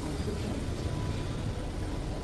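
Steady low rumble and hiss inside an airport shuttle car.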